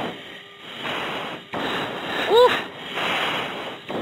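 Heavy breaths into an F-16 oxygen-mask microphone, heard over the cockpit intercom as hisses about a second long, with a shout of 'Woo!' about two seconds in. This is a passenger catching his breath after a hard G-strain.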